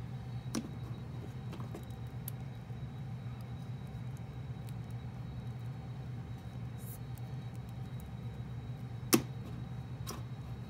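Faint clicks and taps from a plastic action figure's joints and stand as it is handled and posed, with one sharp louder click about nine seconds in, over a steady low hum.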